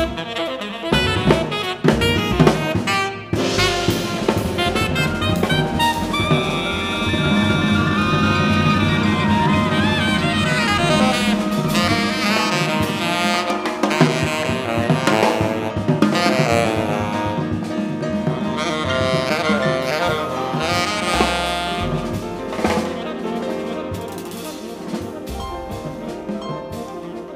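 Live jazz quartet playing: saxophone leading over grand piano, upright bass and drum kit. The music grows gradually quieter over the last few seconds.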